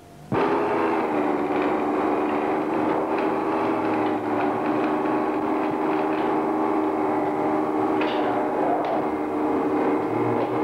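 A steady hum made of several held pitches starts abruptly and runs on evenly, with faint scattered clicks.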